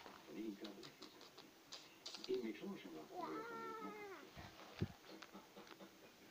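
A single drawn-out meow, about a second long, rising and then falling in pitch, about halfway through, with faint low voices before it.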